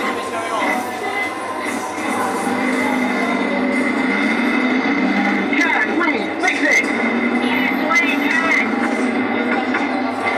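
Coin-operated kiddie ride in motion: its drive mechanism running, with an electric motor turning a belt pulley and rubber-tyred wheels in a steady hum. The ride's own speaker plays voices and music over it.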